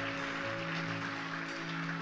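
Soft background music from a church worship band: sustained chords held steady, with no clear beat.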